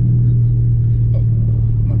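Dodge Hellcat's supercharged 6.2-litre HEMI V8 droning steadily under light throttle at cruise, heard from inside the cabin, with the car held in its restricted 500-horsepower mode. The drone holds one low, even pitch without rising.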